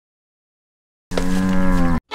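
Silence for about the first second, then a cow moos once, a single drawn-out call that breaks off abruptly.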